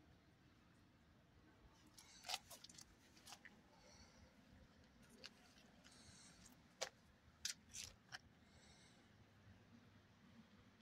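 Near silence, broken by a handful of short, sharp clicks between about two and eight seconds in.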